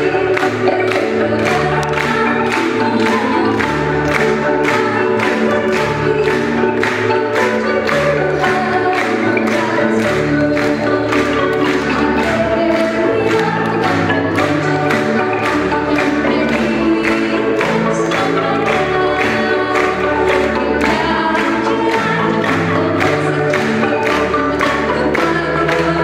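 A woman singing lead with a choir, accompanied by an Indonesian kolintang ensemble of wooden xylophones struck with mallets, keeping a steady beat.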